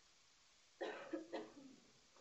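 A person coughing, a short burst of two or three coughs about a second in.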